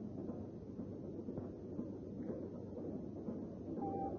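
Faint steady background noise with a low hum, as on an old film soundtrack, with no speech; a steady high tone comes in near the end.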